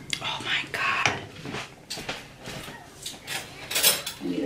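Soft breathy mouth sounds during the first second, then a few light clicks and knocks of utensils against a cooking pot, with a denser clatter near the end as the silicone spatula is set down in the pot.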